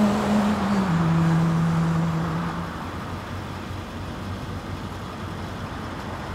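The song's last held note rings out and fades by about three seconds in, leaving a steady wash of distant road traffic.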